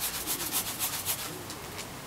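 Fine white granules shaken fast in a small plastic food container: a rapid, even rustling rattle of about seven shakes a second that fades out about a second and a half in.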